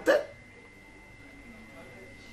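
A man's voice gives one short syllable at the very start, then pauses. The pause holds quiet room tone with a faint steady high-pitched whine.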